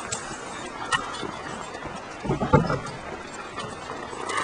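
Outdoor camcorder sound with steady background hiss, a sharp click about a second in, and a brief vocal sound from a boy a little past halfway.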